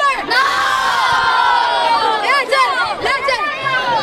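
A crowd of children shouting and cheering together: many high voices in one long yell of about two seconds that falls slightly in pitch, followed by scattered separate shouts.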